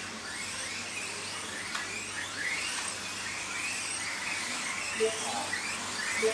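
Kyosho Mini-Z 1:27-scale RC cars' small electric motors whining, the pitch rising and falling as they accelerate and brake around the track. A short electronic beep near the end.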